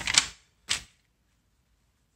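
Pages of a paper tool flyer being turned: a rustle at the start ending in a sharp flap of the page, then one more short rustle just under a second in.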